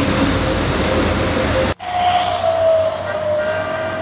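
A heavy bus engine running close by, with road noise, as the bus climbs the hill. The sound cuts out for an instant about two seconds in, and then road traffic carries on with a steady whine.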